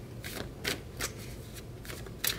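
A deck of tarot cards being shuffled by hand: a handful of brief, crisp card strokes at uneven intervals.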